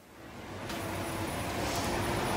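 Steady, rumbling city traffic ambience fading in from silence and growing louder.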